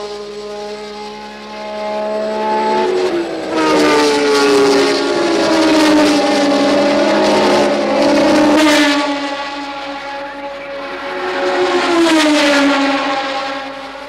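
1976 Formula One cars passing at racing speed one after another, each engine's high whine dropping in pitch as it goes by, loudest in the middle stretch.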